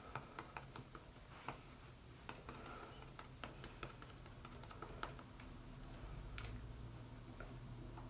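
Faint, irregular soft clicks and taps, several a second, from a damp Beauty Blender makeup sponge being dabbed against the skin to blend in foundation.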